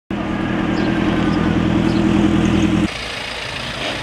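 A vehicle engine running steadily at idle, which cuts off abruptly about three seconds in, leaving a quieter background of outdoor noise.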